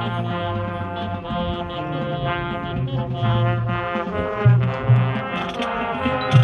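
Marching band playing, its brass holding sustained chords. Loud low notes punch out twice near the end.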